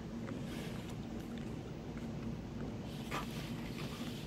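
Eating sounds: soft chewing and a few light clicks of a metal fork against plastic takeaway food containers, over a steady low background hum.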